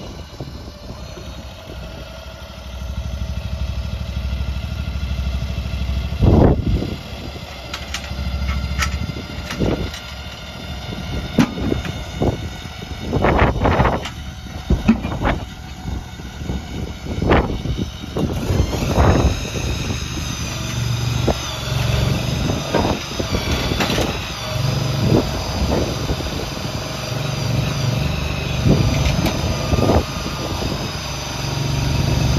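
A piggyback forklift's engine running as it moves a portable shed, with repeated clanks and knocks over the low engine hum. About two-thirds of the way through, a higher-pitched whine joins.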